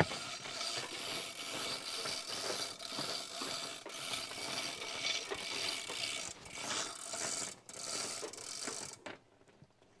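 Hand-pulled chain hoist lifting a hog carcass, its chain rattling and pawl clicking continuously before stopping abruptly about nine seconds in.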